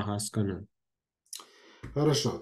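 A man speaking Russian over a video call trails off, then the audio drops out to dead silence for about half a second. A faint click with low hiss follows, and speech starts again near the end.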